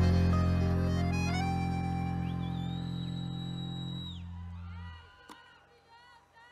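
A live band's closing chord, held with keyboard-like sustained tones after the final hit, slowly fading and dying away about five seconds in.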